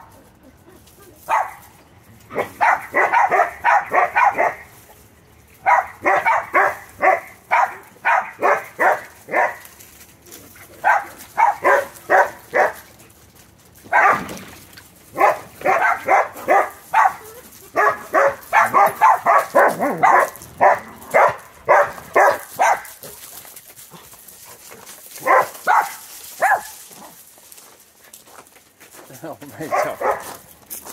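A dog barking in rapid runs, about four or five barks a second, each run lasting a few seconds with short pauses between, dying away near the end.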